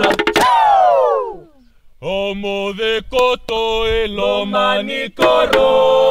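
Group of voices chanting a traditional Fijian dance song in unison. About half a second in the chant ends on a long falling vocal glide and breaks off briefly, then starts again with sharp percussive strikes.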